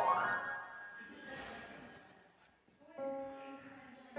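Grand piano played by hand: a rising run of notes tops out at the start and rings away, fading over about two and a half seconds. A chord is then struck about three seconds in and holds.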